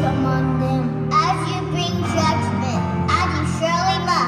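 Live band music: electric guitar, bass and a lead singer's vocals, with the pitch of the melody wavering over a steady bass, recorded from among the audience in a concert hall.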